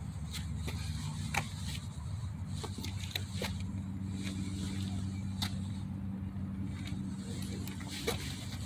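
A motor vehicle's engine running steadily with a low hum, with a few faint clicks over it.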